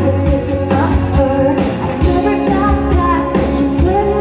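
Live pop band playing: a woman singing over acoustic guitar, electric bass, keyboard and a drum kit keeping a steady beat, amplified through a PA.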